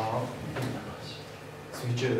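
A man's voice breaks off mid-sentence. A pause of about a second and a half follows, holding only faint room noise and a couple of small, brief handling sounds. His voice picks up again near the end.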